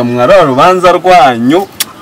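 A man's voice, drawn out with pitch swooping widely up and down, in an anguished tone, stopping about one and a half seconds in. A single short click follows near the end.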